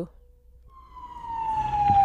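Police siren fading in, its wail gliding slowly down in pitch as it grows louder.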